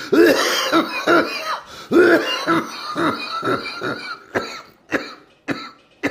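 A man's coughing fit: a rapid run of harsh coughs for about four seconds, then three single coughs spaced out near the end.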